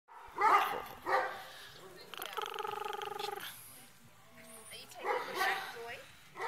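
Small puppy tugging on a toy, giving two short high barks, then a drawn-out pulsed growl lasting about a second, and another bark near the end.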